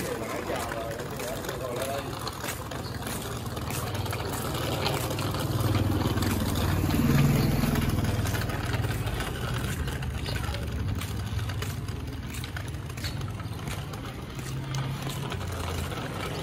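Low, steady rumble of a motor vehicle's engine running in the street. It grows louder to a peak about seven seconds in, fades, then builds again near the end.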